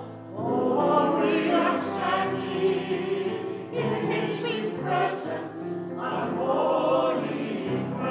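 Mixed church choir of men's and women's voices singing an anthem, with a brief break between phrases just after the start.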